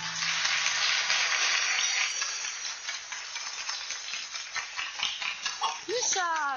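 Audience applauding steadily at the end of a sung performance, with the accompaniment's last low note dying away in the first second or so.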